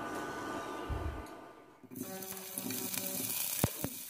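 Cooking oil poured from a bottle into an empty stainless steel pot, a quiet steady hiss that stops about two seconds in. Faint steady tones follow, with two light clicks near the end.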